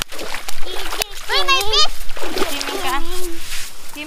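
A toddler splashing in shallow seawater at the water's edge. Twice a young child's high voice calls out, about a second and a half in and again near three seconds.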